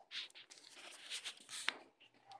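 Faint scratchy rustling with one sharp click near the end.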